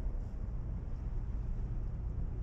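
Steady low rumble with a faint hiss: wind buffeting the microphone of a camera mounted on a parasail rig in flight.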